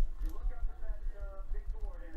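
Faint talking in the background over a low, steady rumble.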